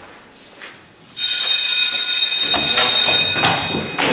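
Classroom bell ringing: a steady, high-pitched electric ring that starts suddenly about a second in, sounds for about two seconds and then dies away.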